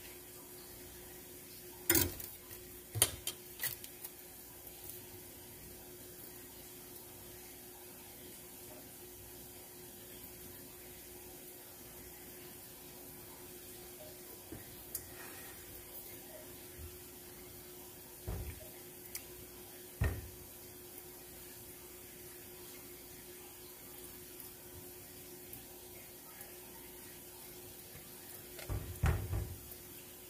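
Scattered knocks, taps and scrapes of a metal can and a silicone spatula against a stainless steel saucepan as canned chili is scooped out, over a steady hum. A denser run of knocking and scraping comes near the end.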